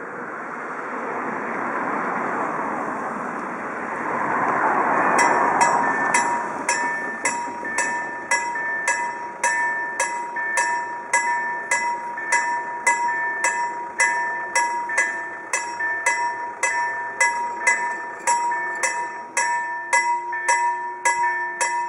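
Polish level-crossing electronic warning bells (KLD-4013 / KLD-4103 sound signals) start about five seconds in, striking about twice a second over a steady ringing tone, while the red lights flash to warn that a train is coming. Before that, a rushing noise swells and fades. Near the end a low hum begins as the barriers start to lower.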